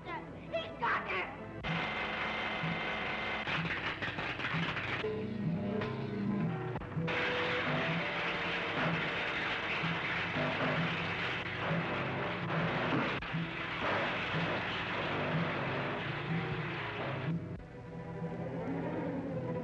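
Old film soundtrack: loud crackling and buzzing of sparking laboratory electrical apparatus over orchestral music with a steady, pounding low beat. The noise starts suddenly about two seconds in and drops away shortly before the end.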